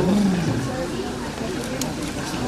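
A spectator's loud, drawn-out shout of encouragement in the first half-second, followed by roadside voices chattering.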